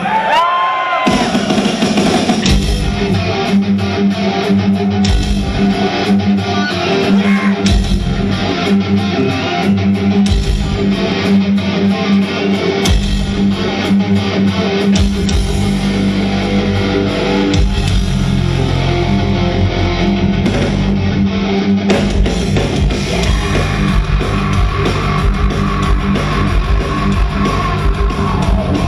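Heavy metal band playing live: distorted electric guitars, bass and drums at full volume, heard from within the crowd. A bending guitar note opens, and the full band comes in about a second in.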